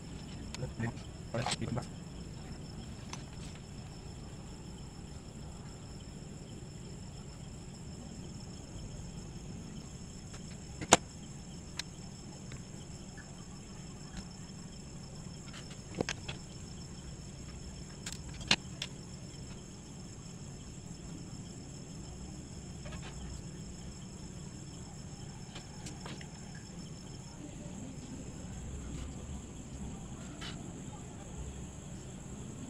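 Sparse sharp clicks and taps from hands handling a wire lead, perfboard and 9 V battery on a wooden table, the loudest about eleven seconds in. Under them runs a steady low hum and a thin high whine.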